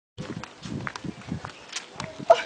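Footsteps of a woman in sandals walking on a paved path while carrying a man piggyback, a few sharp slaps among them, with people's voices in the background.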